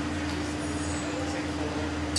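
Steady low hum with a constant tone and an even hiss from running glassworking equipment.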